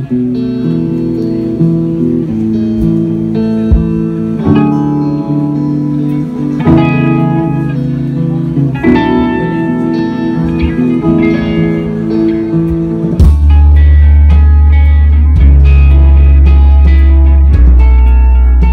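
Live band playing on amplified stage sound, led by electric guitars. About 13 seconds in, a heavy deep bass comes in and the music gets louder.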